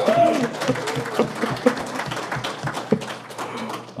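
Room audience applauding: many hands clapping irregularly, with a few voices calling out among the claps.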